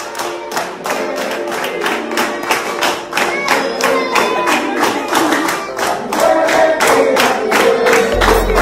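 Several people singing a birthday song to steady rhythmic hand clapping, about three or four claps a second.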